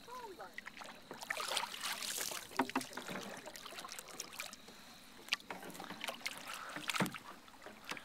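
Paddle strokes in calm lake water: irregular swishing splashes and drips as the paddle dips and lifts, with a few sharp clicks spaced a couple of seconds apart.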